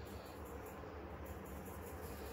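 Faint steady hiss with a low hum underneath: background room tone, with no distinct sound.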